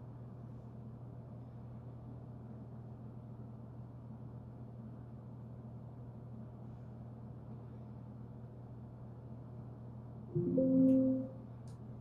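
Windows alert chime, one short sound of a few stacked notes about ten seconds in, as a Windows Security warning dialog pops up. Under it a steady low hum.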